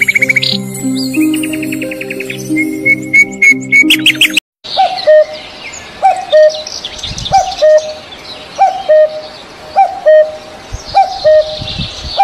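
For the first four seconds, a bird chirps in fast high runs over soft background music. After a brief break, a common cuckoo calls its two-note 'cuck-oo', a short higher note then a longer lower one, about six times at even spacing, with other birds singing faintly behind.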